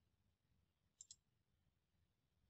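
Near silence, with two faint computer mouse clicks close together about a second in.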